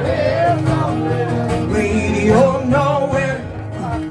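A woman singing with a strummed acoustic guitar, holding long sung notes over the chords.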